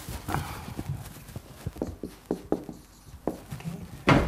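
A board eraser briefly rubbing across a whiteboard, then a marker writing on it: a string of short, irregular taps and clicks as the pen tip strikes and lifts off the board.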